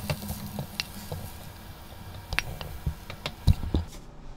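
Stir-fried potato, carrot and onion strips being tipped from a nonstick pan onto a ceramic plate: soft pattering of the food landing, with scattered light clicks of a utensil against pan and plate and a low knock about three and a half seconds in.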